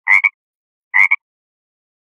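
Frog calling: two short croaks about a second apart, each ending in a quick second note.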